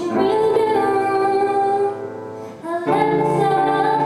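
A woman singing a slow song to her own upright piano accompaniment. One sung phrase fades out about two seconds in, and a new phrase begins about a second later.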